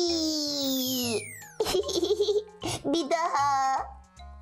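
A long falling "whee" cry and a descending whistle sound effect as a toy doll goes down a slide, then a short giggle about two and a half seconds in, over children's background music.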